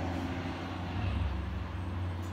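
A steady low rumble with no speech.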